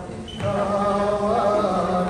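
A group of voices singing a Tibetan song together, accompanied by strummed dranyen (Tibetan lutes). A new sung phrase comes in about half a second in, after a brief lull.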